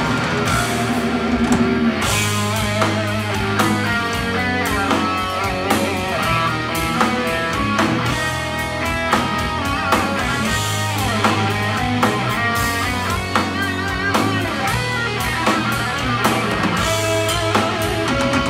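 Live heavy metal band playing: electric guitars, bass guitar and drum kit, steady and loud throughout.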